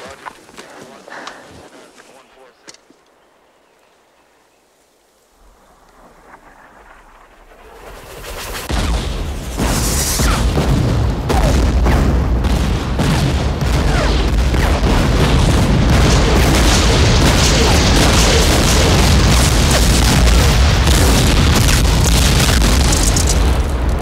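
Artillery barrage falling on a hilltop, the fire for effect just called in by radio. After a few quieter seconds, shell explosions build from about six seconds in into a loud, continuous din of overlapping blasts and deep rumble.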